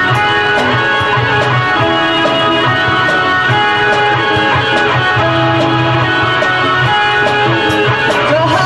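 Live rock band playing an instrumental passage: an electric guitar plays a line of held notes over bass guitar and a drum kit, with steady cymbal strokes.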